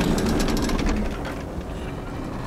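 Action-film sound effects: a steady low rumble with a rapid run of crackles and clicks in the first second that thins out.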